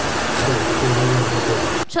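A steady, loud rushing noise of a machine running, with a man's voice talking under it; the noise stops abruptly near the end.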